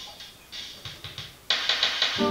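Acoustic guitar strummed in a rhythm of short, muted, percussive strokes with no ringing notes. The strokes turn sharply louder about one and a half seconds in.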